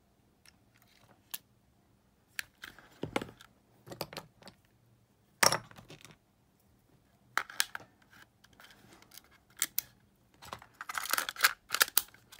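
Scattered small clicks, taps and scrapes of a Sony Walkman cassette player's opened case and tape mechanism being handled during a drive-belt replacement. The loudest knock comes about halfway through, and a quick run of scraping clicks near the end.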